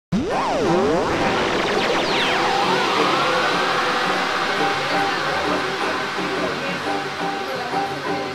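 Music opening with sweeping pitch glides that rise and fall over the first two or three seconds, then settling into a steady pattern of repeated notes.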